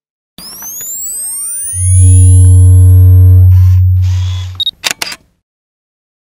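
Synthesized logo sound effect: a rising swirl of sweeping tones from about half a second in, then a loud, deep boom with a held low tone from about two seconds that fades out around four and a half seconds. A few sharp clicks close it.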